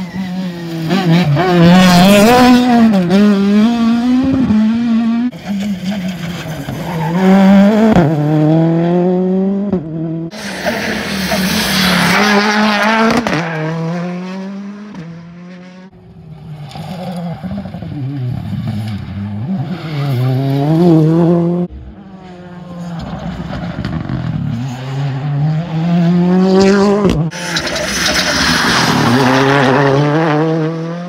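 Rally cars accelerating hard through a bend on a tarmac stage, engines revving up and dropping as they change gear, in several separate passes one after another. Each pass builds to a loud peak as the car goes by, then fades or cuts off.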